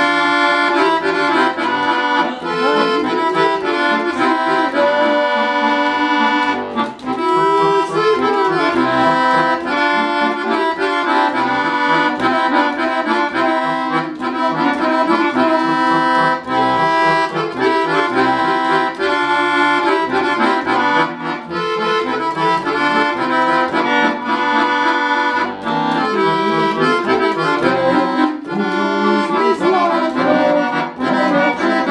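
Piano accordion played solo: one continuous tune with quickly changing melody notes over steadier, sustained lower chords.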